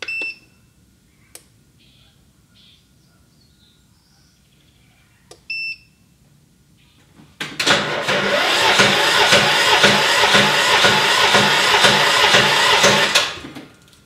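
Two short electronic beeps, then the Craftsman riding mower's starter cranks the engine for about six seconds with an even chugging pulse. It stops without the engine catching.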